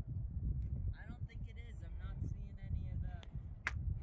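Faint, distant talking over a steady low rumble of wind on the microphone, with one sharp click near the end.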